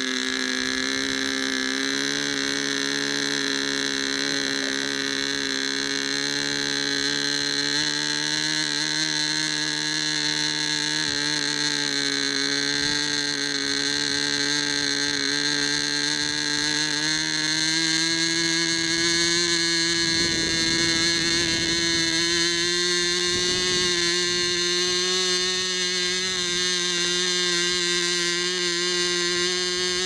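Small glow-plug engine of a radio-controlled model plane running steadily at low revs, its pitch creeping up a little in the second half as the carburettor needle is adjusted. It runs with the glow-plug igniter still clipped on, the plug being taken for broken.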